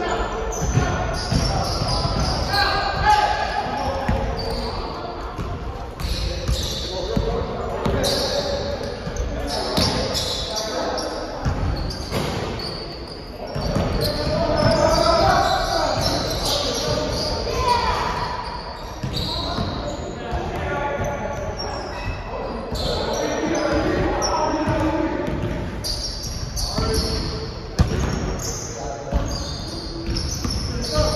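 Basketball bouncing again and again on a hardwood gym court during pickup play, with players' voices calling out, all echoing in a large gym hall.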